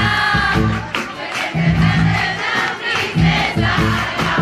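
Live band music with a crowd of audience members loudly singing along, heard from among the audience.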